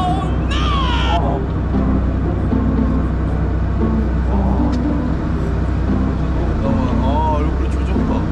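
Fishing boat's engine running steadily with a low drone. Short high-pitched voice sounds come in the first second and again near the end, over faint background music.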